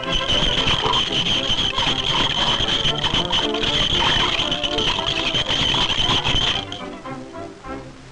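Cartoon sound effect of a spoon rapidly stirring a fizzing iced drink in a glass: a scratchy rubbing rattle with a steady high whistle-like tone, over the film's music score. It stops about six and a half seconds in, leaving the music.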